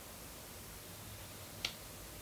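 Paper nail form being handled and pressed onto a fingernail: one short, sharp click about one and a half seconds in, over a faint steady hiss.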